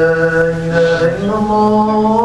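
A man's solo voice chanting a melodic recitation without instruments, holding one long low note, then stepping up to a higher held note about a second in.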